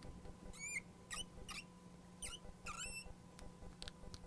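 Marker squeaking on a glass lightboard as a box is drawn around a formula: about five short, high squeaks, some bending in pitch, over a faint steady electrical hum.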